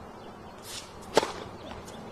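Tennis ball struck by a racket: a single sharp pop a little over a second in, with a short swish just before it.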